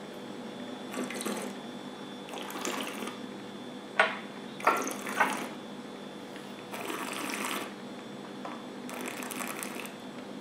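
A person sipping a spirit and working it around the mouth. There are several short sucking, slurping breaths drawn through the lips over the liquid, with a couple of sharp clicks around the middle.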